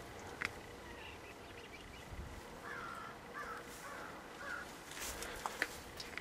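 Faint bird calls: four short caws in an even row, a little over half a second apart, midway through.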